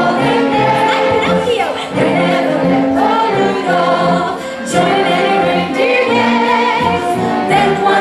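Mixed community choir of men and women singing a Christmas carol in sustained phrases, with a brief pause for breath about four and a half seconds in.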